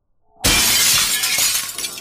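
A 5 kg rock dropped onto a glass pane smashes it about half a second in: a sudden loud shattering crash that runs on for more than a second and fades.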